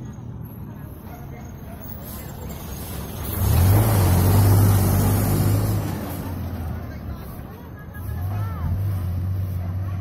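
Large box truck's diesel engine passing close by, loudest about four seconds in, with a high hiss of air over the engine. Its engine note picks up again near the end as it drives on.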